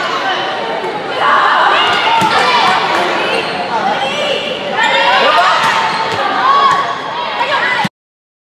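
Volleyball rally in a gym: players and spectators calling and shouting over one another, with a few sharp smacks of the ball being hit. The sound cuts off abruptly near the end.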